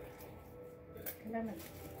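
Fairly quiet room sound with faint clicks and rustles of a gift box being handled, and a short, faint bit of voice about halfway through.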